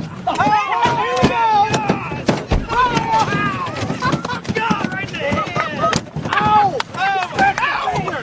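Leaping Asian carp smacking against the metal boat and the men aboard, a rapid, irregular string of sharp slaps and thuds.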